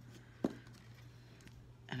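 Quiet handling of a small stained-glass piece and its lead came on a work table, with one sharp tap about half a second in over a faint steady hum.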